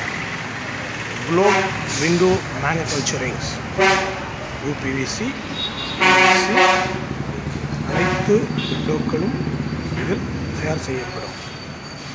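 People talking, with a steady horn toot lasting under a second about six seconds in and a low steady hum later on.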